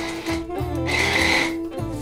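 Small electric food chopper running for about a second with a steady whine, dicing red onions.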